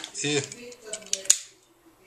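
A few sharp clicks of a cigarette lighter being picked up and handled, the loudest a little over a second in.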